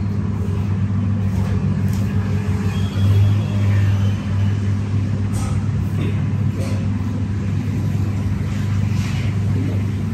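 A steady low mechanical hum with a few faint light clicks over it.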